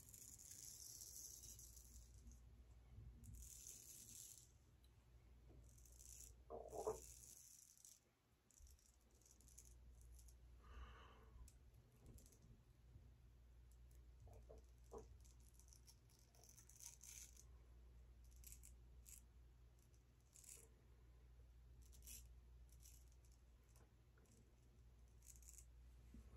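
Faint, intermittent scraping of a straight razor cutting stubble under the chin and jaw, in short irregular strokes, with a brief louder sound about seven seconds in.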